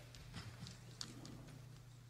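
Faint, irregular clicking taps of footsteps on a hard floor, over a low steady hum.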